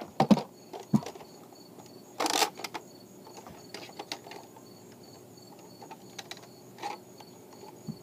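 Scattered plastic clicks and knocks from a Nerf blaster and its dart magazine being handled, with one louder rustling clatter about two seconds in. Faint, evenly repeating insect chirping runs underneath.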